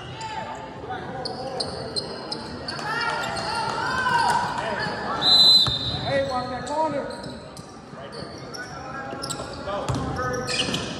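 A basketball being dribbled on a hardwood gym floor, with sneakers squeaking and players and spectators calling out, all echoing in a large gym. There is one loud, high squeak about halfway through.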